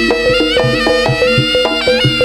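Jaranan ensemble playing an instrumental passage: a nasal reed wind melody, typical of the Javanese slompret, over regular strokes of a hand-played kendang drum.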